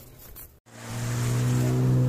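After a brief quiet stretch and a cut, a steady low engine hum swells in and holds.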